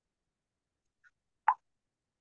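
Dead silence broken once, about a second and a half in, by a single short pop.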